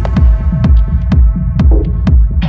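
Techno track: a heavy kick drum pulsing about twice a second under a sustained synth chord that fades away, with short percussion ticks on top.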